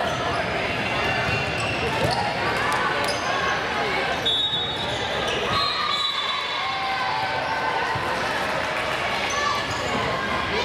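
Indoor volleyball game in an echoing gym: players calling and spectators talking, with knocks of the ball and two brief high-pitched tones around the middle.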